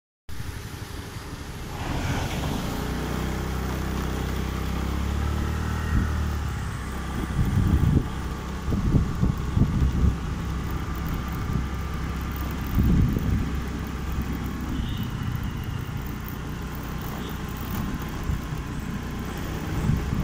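A small two-wheeler engine running steadily under way, with wind buffeting the microphone in low rumbling gusts, strongest from about eight to ten seconds in and again around thirteen seconds.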